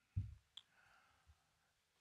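Near silence in a small room, broken by a brief soft low thump just after the start and a faint short click about half a second in.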